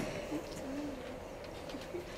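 Quiet room tone of a hall, with one faint, short low hum a little over half a second in.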